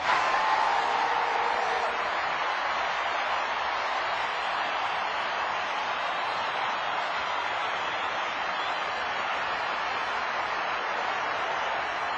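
A large audience cheering and applauding. It starts suddenly at full loudness and holds steady.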